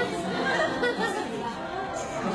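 Several people chattering in the background, overlapping voices with no clear words.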